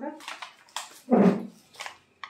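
Clear plastic packaging of a toy doctor kit crinkling in short bursts, with one short, loud, vocal-sounding cry about a second in.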